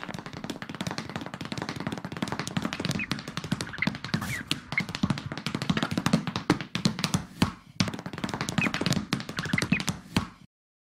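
Tap dancing, presented as a tap-dancing mouse: a fast, dense run of small, sharp tap clicks that keeps going without a break, with a few faint high chirps mixed in.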